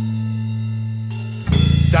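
Band music in a short break between sung lines: a guitar and bass chord held ringing, then the drum kit and bass come back in louder about one and a half seconds in.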